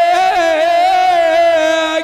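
Odia Danda Nacha folk music: one long, wavering held melodic note over a steady drone, with the drumming that surrounds it dropping out for the moment.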